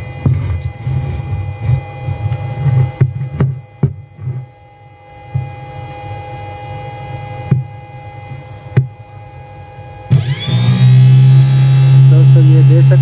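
Wire-twisting clicks and knocks over the faint steady whine of a server power supply's cooling fan. About ten seconds in, a 12-volt DC water-pump motor, powered by the supply, starts with a quick rising whine and then runs with a loud, steady hum.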